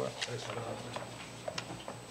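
A few scattered light clicks over quiet room noise, following a single spoken word at the start.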